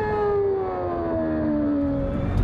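Formula 1 car engine heard onboard, holding one note that falls steadily in pitch as the revs drop.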